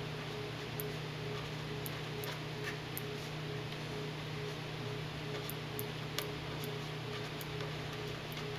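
Felt-tip marker writing on paper: faint scratches and small irregular clicks as the figures are written. Under it runs a steady low hum.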